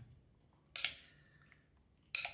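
A metal spoon scraping once against a glass bowl, a short sharp sound a little under a second in, as ceviche is spooned out; otherwise quiet.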